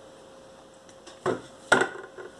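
A hot glue gun set down on a hard tabletop: a brief rustle of handling, then a single sharp knock near the end.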